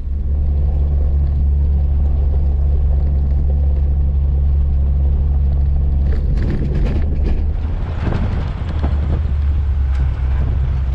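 Jeep Wrangler driving along a dirt road: a steady low engine and road rumble. From about six seconds in, a rougher rushing, rattling noise joins it.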